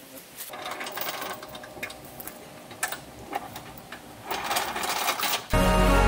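Rapid mechanical clattering, then background music with a heavy bass comes in suddenly about five and a half seconds in.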